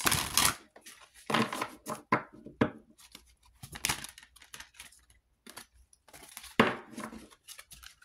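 A deck of tarot or oracle cards being shuffled and handled, a series of short, irregular rustling and slapping strokes of card stock, loudest right at the start and again a little before the end.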